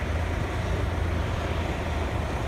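Steady low rumble of motor vehicle engines with a hiss of road noise over it.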